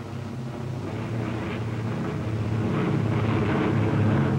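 Piston-engine propeller aircraft droning steadily in flight, growing gradually louder.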